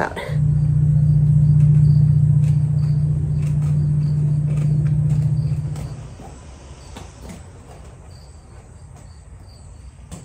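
A steady low hum, like a motor or engine running nearby, is the loudest sound; it holds level for about six seconds and then fades away. Crickets chirp faintly and evenly in the background and are easier to hear once the hum is gone.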